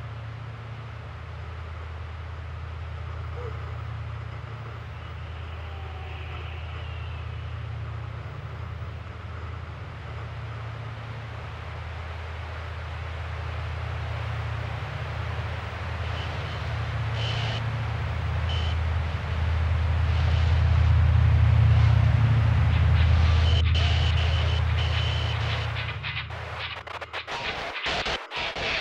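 A low, steady rumbling drone that slowly swells in loudness through most of the stretch, then breaks up and fades in the last couple of seconds, with a few faint higher ticks and tones over it.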